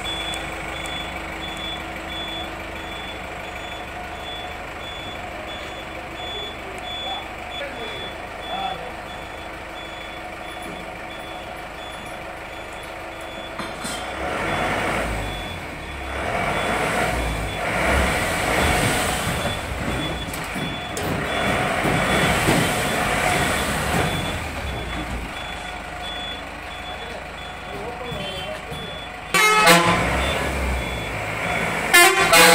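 A bus's electronic reversing beeper pips steadily over a constant hum. About halfway through, the bus engine comes in much louder and rougher, and a loud horn blast starts just before the end.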